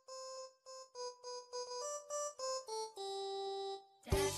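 Electronic keyboard playing a simple melody one note at a time: a run of short notes, mostly on the same pitch, that steps down to one long low note near the end.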